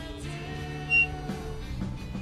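Background music with steady held notes; a short high tone stands out about halfway through.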